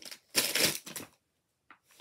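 Crinkling of a plastic blind-bag wrapper as it is handled and opened, a single short burst lasting about half a second, with a faint tick near the end.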